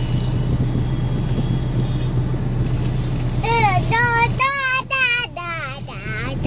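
Steady low rumble of a moving car's cabin, and from about three and a half seconds in a toddler's high, drawn-out vocal sounds with a wavering pitch, several in a row.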